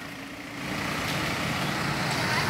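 Light tow truck's engine running and growing louder about half a second in as the truck pulls away.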